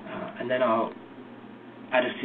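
Speech only: a man's voice says a few words in the first second, over a low steady hum.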